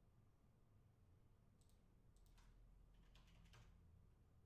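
Near silence: faint room tone with a few quick, faint clicks in the second half, the loudest a short cluster near the end.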